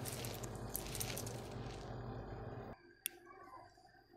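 Computer power-supply cooling fan running steadily with a low whir and hum, freshly cleaned and lubricated and spinning smoothly. The sound drops away suddenly a little under three seconds in, and a single faint click follows.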